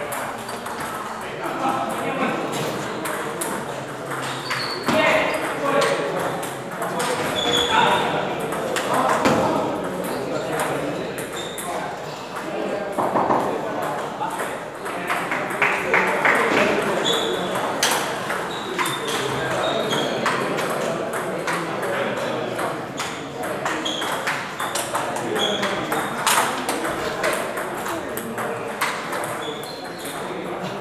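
Table tennis ball clicking repeatedly off rubber paddles and the table during rallies, with more ping-pong clicks from neighbouring tables. Background crowd chatter fills the hall.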